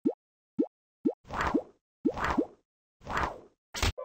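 Cartoon sound effects: three short blips rising quickly in pitch, about one every half second, then three longer swishes each carrying a rising tone, and a brief sharp burst just before the end.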